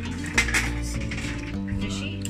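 Metal chopsticks clicking against a ceramic plate while picking up sashimi, with one sharp clink about half a second in, over background music.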